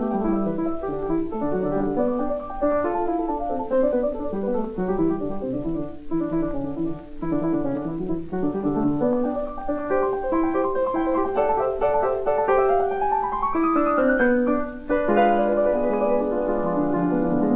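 Solo piano in a lively, quick-moving rondo, recorded in the 1940s, so the sound is dull with no bright top. Near the end a run climbs steadily upward, breaks off for a moment, and a loud chord starts the next phrase.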